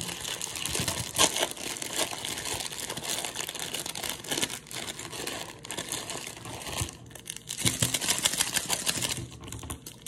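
Plastic wrapper of an instant ramen noodle pack crinkling and crackling irregularly as it is pulled open by hand, busiest near the end.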